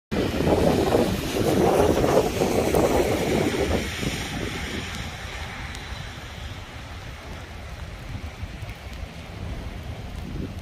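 Wind buffeting the microphone. It is loudest and roughest for about the first four seconds, then eases to a steadier, quieter rushing.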